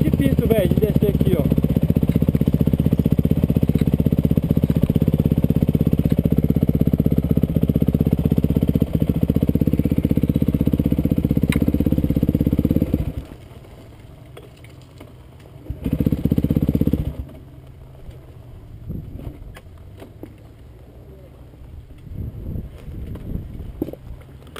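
Dirt bike's single-cylinder engine running steadily close to the microphone, then cutting out about halfway through. It runs again for about a second a few seconds later, after which only faint engine and handling sounds remain.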